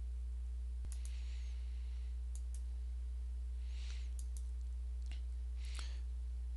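Computer mouse clicking: several faint, sharp clicks, mostly in close pairs, spread over a few seconds as layers are switched off. A steady low hum runs underneath.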